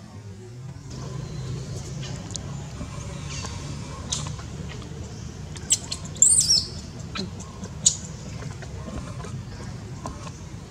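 Infant long-tailed macaque crying in distress: a few short, high-pitched squeals, the loudest a wavering squeal about six seconds in, over a steady low hum.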